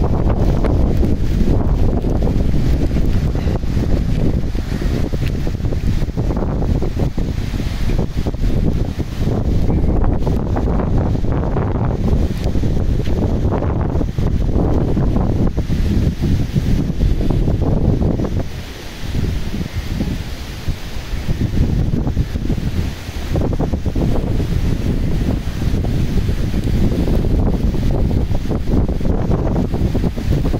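Strong gusty wind buffeting the microphone in a monsoon storm, with rain and sea surf beneath it. The gusts ease briefly about two-thirds of the way through, then pick up again.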